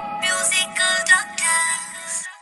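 Short synthesized logo jingle: three bright chiming swells, the last one the longest, fading out.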